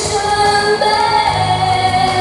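A woman singing a Mandarin pop ballad into a handheld microphone over a backing track, holding long notes.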